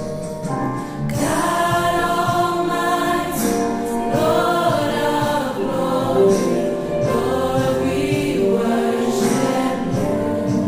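Gospel choir singing in several-part harmony, the sound swelling fuller about a second in.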